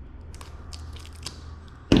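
Small folding knife blade cutting at the seal of a cardboard camera box: a few faint scrapes and ticks.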